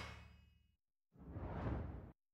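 The closing theme music fades out, then after a short silence a brief whoosh sound effect swells and dies away near the end, part of a broadcaster's logo ident.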